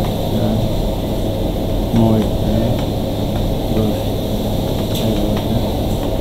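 Steady background hum and noise, like a room fan or air conditioner, with a brief murmur of a voice about two seconds in.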